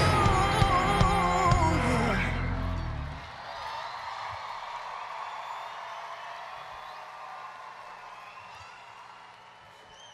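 A live band's closing chord with a woman's held, wavering sung note and drum hits, ending about two to three seconds in. An arena crowd then cheers and screams, slowly fading.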